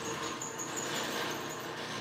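Steady background room noise: an even hiss with a faint, thin high-pitched whine.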